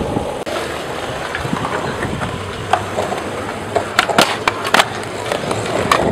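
Skateboard wheels rolling over a concrete skatepark, a steady rough rumble, with a few sharp clacks about four to five seconds in.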